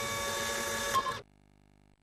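A steady mechanical whirr like a printer feeding paper, lasting about a second and a quarter and then cutting off suddenly.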